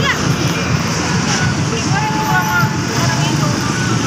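Indistinct, distant voices over a steady low rumble of outdoor background noise.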